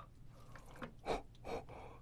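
A few faint, soft, sticky sounds of chopsticks picking up sauce-coated octopus from a tray of seafood jjajang.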